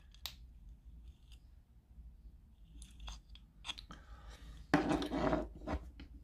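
Faint handling noise from an opened plastic GU10 LED bulb and its wires being turned in the hands: a few light clicks, then a louder burst of rustling near the end.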